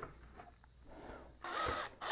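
Porter-Cable cordless drill running briefly, about a second and a half in, as its bit goes into the plastic wall of a 5-gallon bucket; quiet before it.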